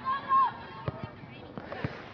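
Sideline voices at an outdoor youth soccer game: a short high-pitched call at the start over a murmur of distant voices, with two sharp knocks about a second apart.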